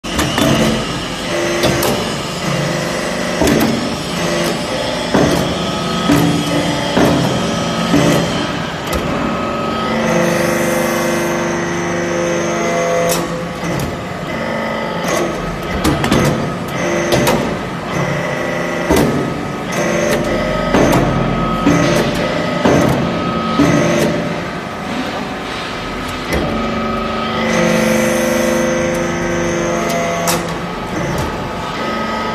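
Vertical hydraulic briquetting press compacting metal chips into round briquettes. Its hydraulic power unit gives a steady hum and whine that grows stronger during some stretches of the cycle, with frequent sharp knocks and clanks from the ram and the pressed pucks.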